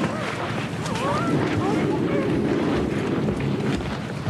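A loud, steady rushing noise like wind, with several voices crying out over it.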